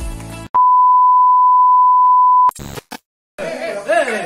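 Background music cuts off and a steady, loud electronic beep at one pitch (about 1 kHz) sounds for about two seconds. After a short silence, music and voices come back near the end.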